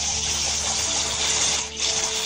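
Loud, steady rushing noise with low held tones beneath it, dipping briefly near the end.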